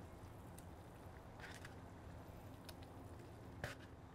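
Faint bubbling of apple ale and onions boiling in a ceramic dish on a grill, with a few soft clicks and taps as raw bratwursts are laid into the liquid.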